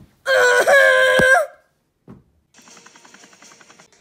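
A young person's voice letting out a loud cry held on one steady pitch for about a second, then stopping. Over the second half, fainter sound from a video playing on a computer screen.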